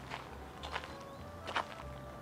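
A few faint footsteps crunching on gravel, at a walking pace, over faint steady background music.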